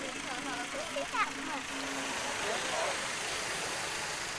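Steady mechanical running noise with a low hum that stops about halfway through, under indistinct voices of several people talking in the background.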